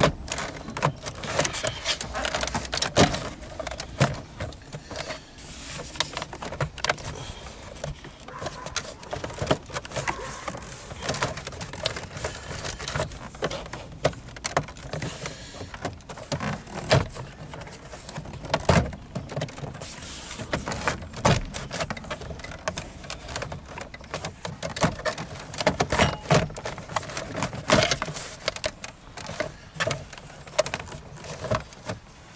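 Plastic centre-console and dash trim of a Honda Civic being worked loose by hand, with irregular clicks, knocks and creaks of panels and retaining clips throughout.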